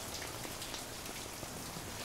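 A running shower: a steady hiss of water spraying down.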